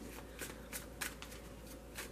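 A tarot deck handled and shuffled in the hand: soft card rustling with several light taps of cards against each other.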